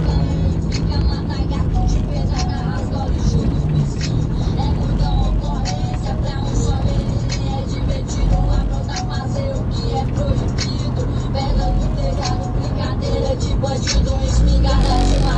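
Rap song playing loud through a car sound system with four subwoofers: a deep, sustained bass line under a regular beat and vocals.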